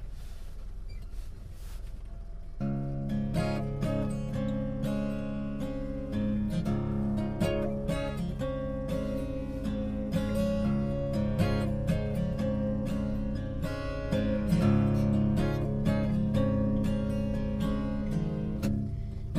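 Martin cutaway dreadnought acoustic guitar fingerpicked, a steady run of plucked notes starting about two and a half seconds in, over a low steady rumble.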